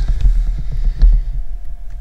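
Handling noise from the camera being lowered on its mount: a low rumble with scattered knocks and a heavier thump about a second in.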